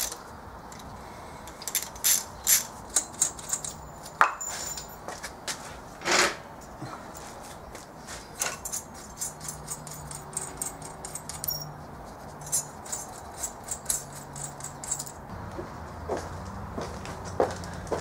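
Hand socket ratchet clicking in short irregular bursts, with metal clinks and a few louder knocks, as the turbo exhaust manifold nuts are run down snug on the cylinder head, not yet torqued.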